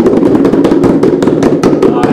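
Three homemade drums, packing tape stretched over plastic containers and a bucket, beaten all together with bare hands: a loud, dense, irregular flurry of rapid hits.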